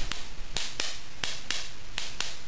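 Capacitor-discharge spark circuit firing: sharp snaps of high-voltage sparks across its spark gap and modified spark plug, about three a second at uneven intervals. It is running on its TIP42 transistor trigger alone, without the voltage intensifier circuit connected.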